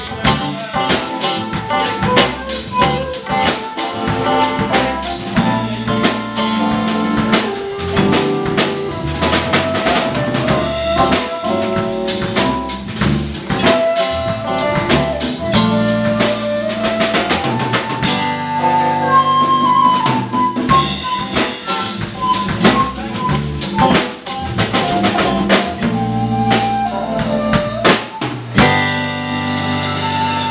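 Live band playing an instrumental passage: electric guitar and a drum kit keeping a busy beat, with a single melody line sliding between notes above the low sustained notes.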